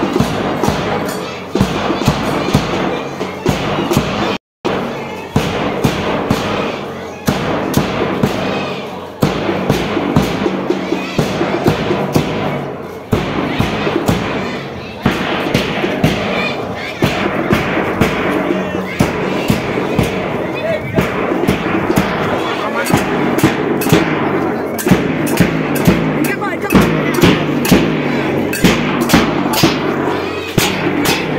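Large double-headed barrel drum beaten with a stick in a steady marching beat, with a crowd of voices talking over it. The sound cuts out completely for a moment about four seconds in.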